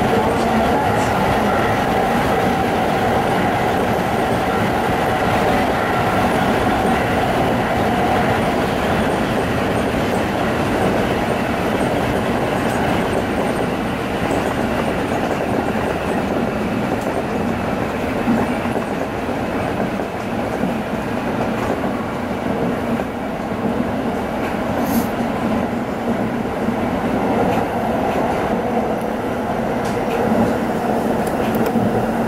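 Tsukuba Express electric train running on its rails, heard from the front car behind the cab: a continuous, steady rolling noise.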